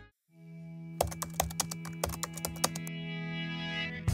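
Computer-keyboard typing sound effect: a quick run of key clicks from about a second in, lasting under two seconds, over a held music note.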